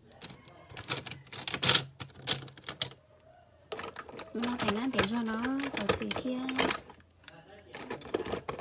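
A quick run of sharp clicks or taps, then from about four seconds in a person's voice for about three seconds, rising and falling in pitch, with clicks still heard under it.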